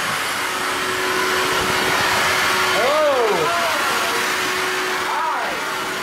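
Vacuum cleaner running steadily, a loud whooshing motor noise with a steady hum, growing louder in the first moments. A brief rising-then-falling tone cuts across it about halfway through.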